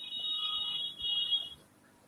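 Two high electronic beeps back to back: a longer one of about a second, then a shorter one.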